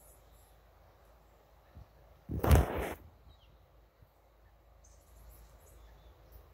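A single loud rush of noise lasting under a second, about two and a half seconds in, over a quiet outdoor background with faint insect and bird sounds.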